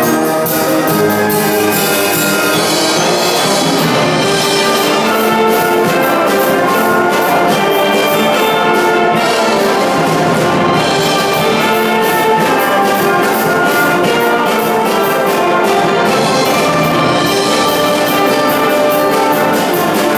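Live brass band playing a piece with a steady beat.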